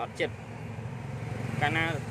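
Short stretches of a man talking at the start and near the end. Underneath and between them runs the low, steady rumble of a vehicle engine.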